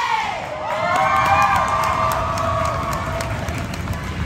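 Crowd cheering and yelling in high, young voices, many held shouts overlapping, as the cheer stunts hit; loudest about a second in.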